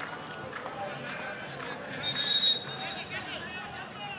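Open-air football ground ambience of distant players' shouts and voices, with a short high whistle about two seconds in.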